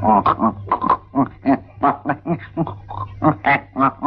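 A man's voice making a rapid string of short, strained grunts and groans, several a second, over a low steady hum.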